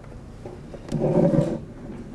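A brief, low, wordless vocal sound about a second in, just after a faint click, lasting under a second against quiet room tone.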